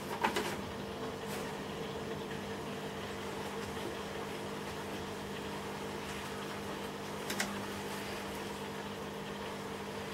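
Steady low electrical hum with a faint higher tone above it. A brief scuffle of a water monitor flinging sand on its log comes right at the start, and a few faint clicks follow, one about a second in and two about seven seconds in.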